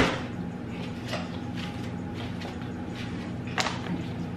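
Faint clicks and taps of kitchen utensils and containers being handled on a counter, with one sharp knock right at the start, over a steady low hum.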